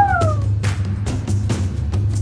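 Outro background music with a steady bass line and a regular beat, opened by a short shout of "woo!" that falls in pitch.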